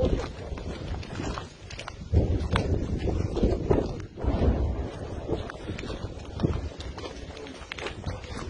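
Footsteps crunching and knocking on rubble-strewn ground as the person filming walks, in an irregular run of short steps, with gusts of wind rumbling on the microphone.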